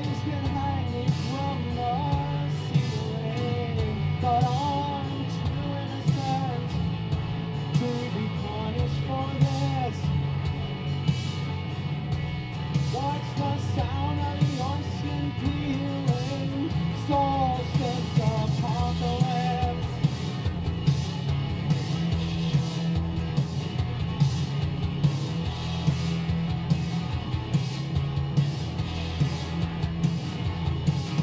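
A live indie rock song: electric guitar played over a pre-recorded backing track with a steady drum beat, with a sung melody through the first two-thirds and the instruments carrying on alone after that.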